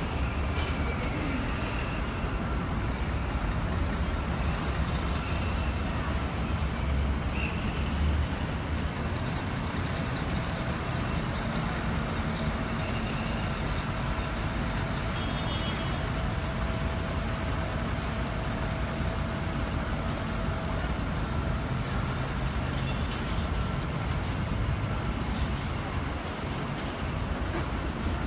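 City street traffic noise, steady, with a heavy vehicle such as a bus or truck giving a low rumble that drops away about eight seconds in, marked by a brief louder sound.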